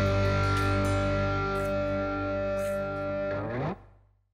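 A live rock band holding its closing chord: distorted electric guitars and bass ringing together over a few cymbal splashes. The chord fades a little, then stops abruptly about three and a half seconds in.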